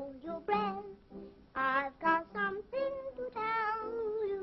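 A woman singing a song, holding notes with a wavering vibrato, longest near the end.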